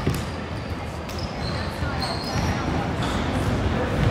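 Basketball bouncing a few times on a hardwood gym floor, with a few short, faint high squeaks from sneakers on the court, over the low din of a large gym.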